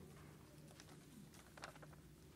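Near silence: faint room tone with a low steady hum and a few soft clicks near the end.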